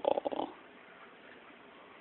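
Miniature pinscher making one brief, low vocal sound at the very start, about half a second long, followed by quiet room tone.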